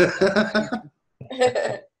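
People laughing, in two short bursts with a brief gap about a second in.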